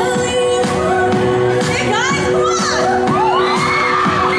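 Pop music with singing plays, and a crowd shouts and cheers over it, with high cries building in the second half.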